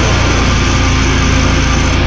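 Slamming brutal death metal: heavily distorted guitars and drums in a dense, loud, unbroken wall of sound over a rapid, even low drum pulse.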